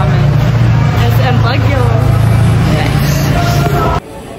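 People talking close by over a loud, steady low hum, all of which cuts off suddenly at the end.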